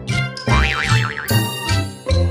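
Upbeat background music with a steady bass beat, with a cartoon boing sound effect, a pitch wobbling quickly up and down, about half a second in.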